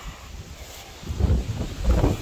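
Wind buffeting the microphone: a low, gusty rumble that grows louder about a second in.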